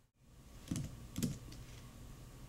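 Two keystrokes on a computer keyboard, about half a second apart, the second the louder.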